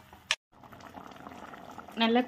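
Thick vegetable gravy simmering in a wok, bubbling softly and steadily. A brief click and a short drop to dead silence near the start mark an edit in the footage.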